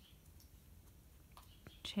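Quiet room tone with a few faint clicks from a crochet hook working yarn stitches, about one and a half seconds in; a voice starts speaking at the very end.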